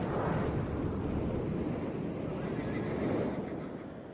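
Horses whinnying over a dense rumbling noise, fading toward the end.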